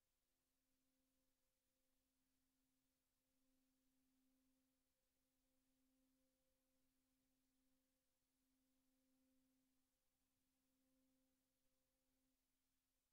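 Near silence, with only a very faint steady low hum that swells and fades every couple of seconds.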